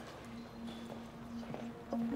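Footsteps knocking on a hard corridor floor, irregular and fairly quiet, over a single low held note of background music.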